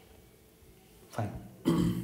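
A man clears his throat once, briefly and loudly, just after saying a single word near the end.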